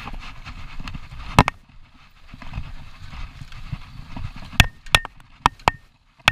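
Downhill mountain bike rolling over a rough dirt trail: a steady low rumble of tyres on the ground, broken by sharp clacks of the bike rattling over bumps. One loud clack comes about a second and a half in, and a quick run of them starts near the end, some with a brief metallic ring.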